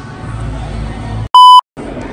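A single loud electronic bleep, one pure steady tone about a third of a second long, coming about 1.3 seconds in with the sound cutting out to silence just before and after it, in the manner of an edited-in censor bleep. Before it is a low background hum.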